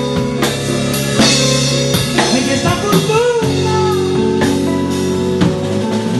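Live band playing: drum kit with repeated cymbal and drum hits over held electric bass notes and guitar.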